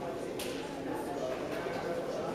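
Indistinct talk of several people echoing in a large sports hall, with one short sharp click about half a second in.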